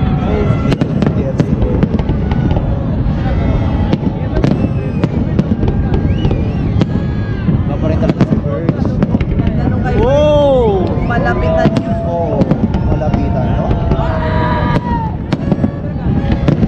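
Aerial fireworks bursting in quick succession: many sharp bangs and crackles over a dense, continuous rumble.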